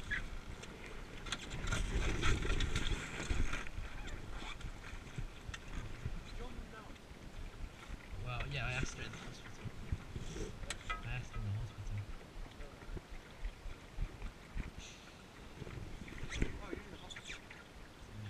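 Sailing dinghy under way: water washing along the wooden hull and wind on the microphone, with a louder rush of noise about two seconds in. Low, indistinct voices come and go.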